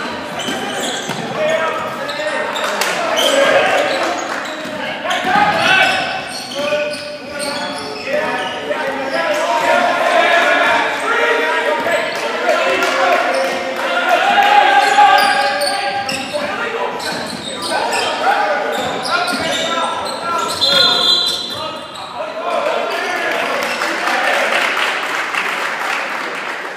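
Spectators and players talking and calling out in an echoing school gym, with a basketball being dribbled on the hardwood. About three-quarters of the way through comes a short shrill referee's whistle.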